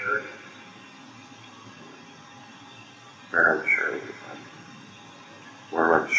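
Two short stretches of indistinct speech, about three seconds in and again near the end, over the steady hiss of a poor-quality recording.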